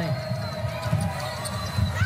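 A basketball being dribbled on the hardwood court, with the arena crowd murmuring underneath.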